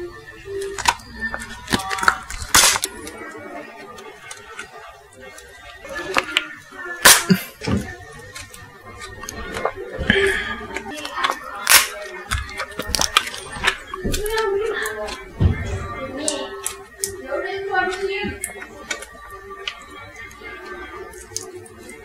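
Plastic sauce sachet crinkling and being torn open, with many sharp, irregular crackles and rustles. Near the end, the thick topokki sauce is poured from the sachet into a glass bowl.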